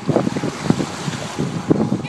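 Wind buffeting the microphone from a moving open Jeep, with water sloshing and splashing as the tyres go through a sandy puddle; the rumble surges unevenly.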